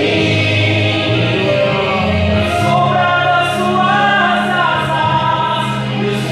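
A man singing a gospel song into a handheld microphone over instrumental accompaniment, with a steady bass line moving from note to note beneath his held, sung notes.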